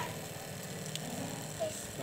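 Homemade mini water pump driven by a small DC motor, running steadily while its outlet tube sprays a thin stream of water into a basin of water. The pump is half-submerged to prime it and is lifting only a little water.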